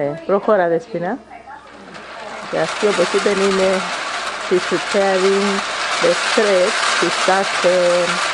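People talking, their voices breaking off and starting again. From about two seconds in, a steady rushing noise builds up under the voices and stays.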